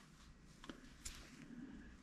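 Near silence, with faint scratching and a few light clicks from a small brush scrubbing the chuck of an electric high-speed dental handpiece to clear out built-up lubricant and black gunk.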